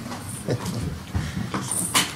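Indistinct low voices and the shuffling movement of people coming forward, with scattered soft knocks and a sharp click near the end.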